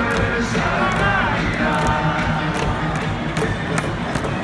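A large stadium crowd singing a baseball cheer song together over amplified music, with sharp beats cutting through.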